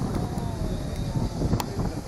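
Engine of heavy machinery running, with wind buffeting the microphone.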